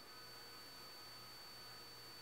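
Near silence: room tone with a faint steady hiss and a thin, faint high tone.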